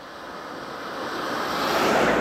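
Daihatsu Cuore small car, with its one-litre three-cylinder engine, approaching and passing close by. The rushing tyre and road noise rises steadily to a peak near the end as the car goes past.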